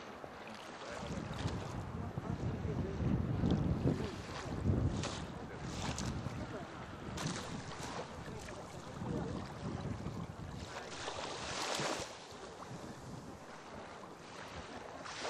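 Wind buffeting the microphone over small waves washing onto a sandy beach, with a louder wash of a wave toward the end.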